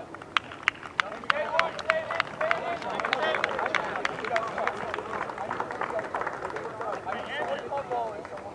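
Several players' voices shouting and calling across an outdoor pitch, overlapping, with a string of sharp clicks in the first few seconds.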